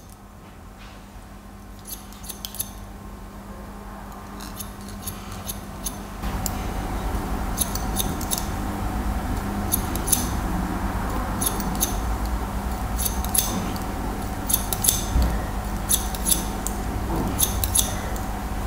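Barber's scissors snipping hair over a comb in short runs of quick cuts, about one run a second, as a scissor-over-comb taper is cut down toward a number two length. A steady low hum underneath grows louder about six seconds in.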